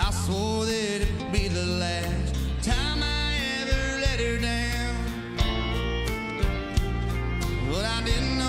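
Live country band playing a song: a male lead vocal over electric guitar, bass and drums, with a drum hit every second or so.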